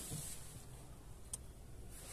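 Quiet cabin of an electric car powering up: a faint steady low hum with one small click about a second and a half in.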